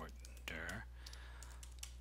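A few scattered computer keyboard keystrokes as code is typed, over a steady low hum. A brief voiced sound comes about half a second in.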